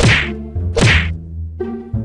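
Two quick falling whoosh sound effects, one at the start and one just under a second later, over a steady low musical drone. Background music with plucked strings begins about one and a half seconds in.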